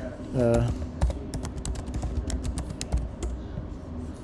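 Typing on a computer keyboard: a quick run of keystrokes from about a second in until near the end, entering a short search query.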